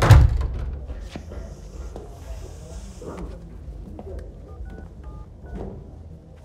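A loud thump at the start, then several short two-tone beeps of phone keypad buttons being pressed near the end.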